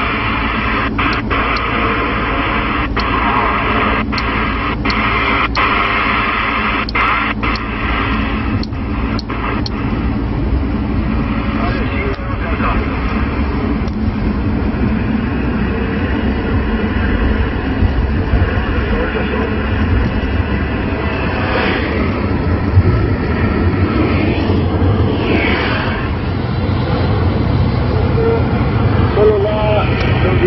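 CRT SS6900 CB radio's speaker giving out steady hiss and static, with faint, garbled voices of distant stations coming through on skip propagation. A run of sharp clicks crackles through the first ten seconds or so.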